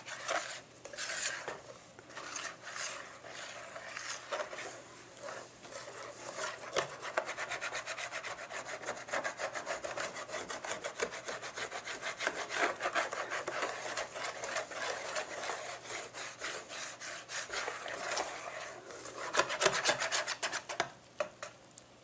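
Wire whisk beating thin crepe batter in a metal bowl: wet slapping of the batter and the wires ticking against the bowl. The strokes are slow and uneven at first, then settle into a fast, even rhythm, with a louder flurry near the end.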